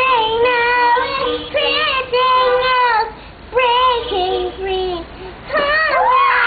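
A young girl singing a melody with long held notes into a large seashell held against her mouth, pausing briefly twice between phrases.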